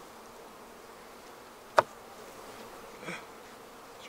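Honeybees humming steadily around an open hive. A single sharp click comes about halfway through, and a faint short sound follows about a second later.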